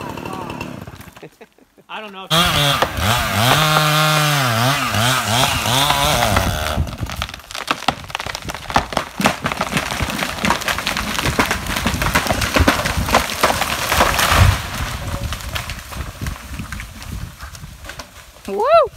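A chainsaw runs for several seconds, its engine pitch dipping and rising as it cuts. It gives way to a long run of cracking and snapping, with one heavy thud about three-quarters of the way through, as a felled tree comes down through the branches.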